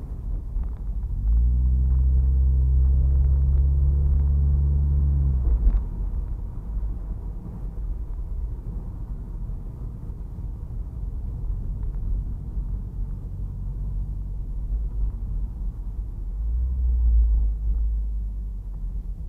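Turbocharged Mazda MX-5 engine and road rumble heard inside the cabin. About a second in, the engine comes in with a steady, even drone at one pitch that cuts off suddenly just over five seconds in, leaving a lower rumble that swells again near the end.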